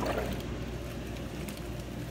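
Jetted bathtub jets running: a steady low pump-motor hum under churning, rushing water.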